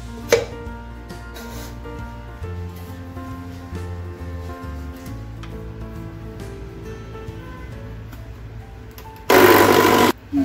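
Background music with a steady bass pattern, a single sharp clink about a third of a second in, then near the end an electric mixer grinder starts with a loud, short burst, grinding dry bread crusts in its steel jar.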